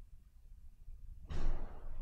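A short, breath-like rush of noise starts suddenly about a second and a quarter in and fades within about half a second, over a low steady hum.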